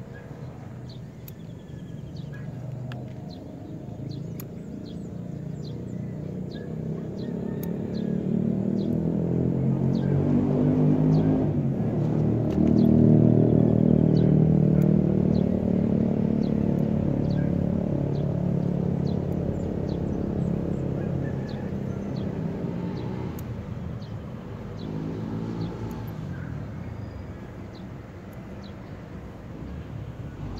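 A passing engine's low droning rumble that builds up over about ten seconds, peaks midway and slowly fades away.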